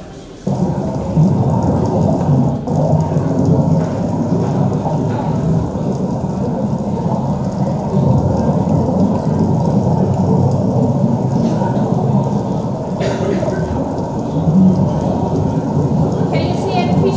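Soundtrack of an underwater diving video played over a room's loudspeakers: a loud, steady, muffled rush of water noise with nothing above the low and middle range. It starts abruptly about half a second in.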